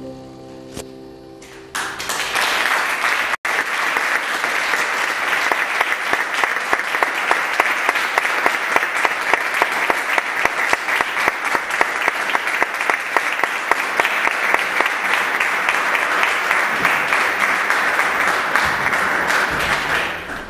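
A grand piano's final chord dying away, then audience applause that starts about two seconds in and runs on steadily.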